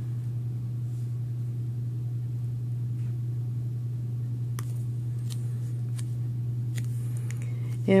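A steady low hum, with about half a dozen faint, sharp ticks and crackles in the second half as a small square of duct tape is handled by hand.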